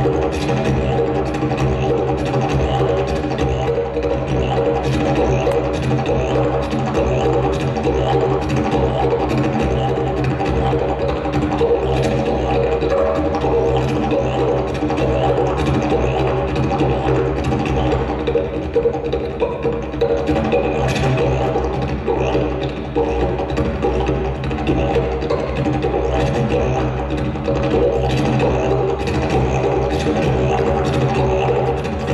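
Wooden didgeridoo played solo: one continuous low drone with no break, its upper overtones shifting in colour as it is played.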